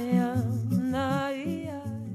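A woman's voice humming a wordless melody with vibrato over acoustic guitar: the closing phrase of a gentle song.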